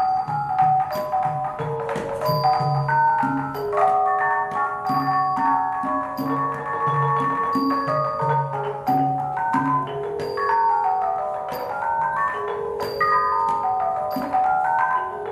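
Khong wong yai, a Thai circle of tuned bossed gong-chimes, played with mallets in quick running melodic lines that rise and fall. It is accompanied by a laced barrel drum played by hand in a steady low pattern and by small hand cymbals (ching) ringing on a regular beat about every second and a half.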